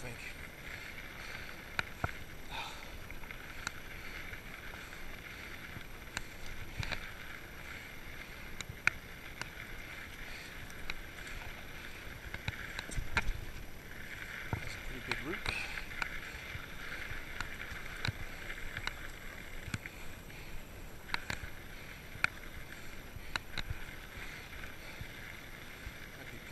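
Salsa Bucksaw 2 fat-tyre full-suspension mountain bike rolling over a dirt trail, heard from a chest-mounted camera: a steady hiss that swells and fades, with scattered sharp clicks and creaks. The rider puts the creaking down to the buckle of the chest mount.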